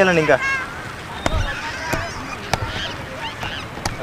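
A man's loud, drawn-out shouted call, ending just after the start, then faint distant voices and a few sharp clicks; another loud shout begins right at the end.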